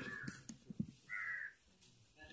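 A crow cawing once, a single call of under half a second about a second in, with a few faint knocks just before it.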